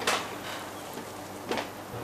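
Two brief soft knocks about a second and a half apart, over low steady hiss.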